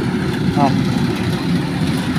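Rice combine harvester running steadily as it cuts the crop, a continuous low engine rumble.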